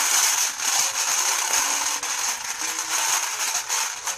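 Forty-eight stones rattling and clattering around inside a bowl as it is swished, a steady, continuous rattle of many small clicks.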